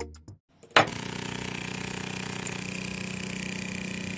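Small electric motor starting abruptly just under a second in, then running steadily with a low hum and a faint high whine as it turns the crank that works a miniature hand pump's handle.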